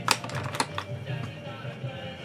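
A run of light clicks and taps, the loudest right at the start, from makeup items being handled: a plastic blush compact and a brush. Quiet background music plays under them.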